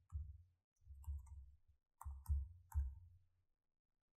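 Computer keyboard keys being typed, quietly, in four short bursts of clicks with soft thuds.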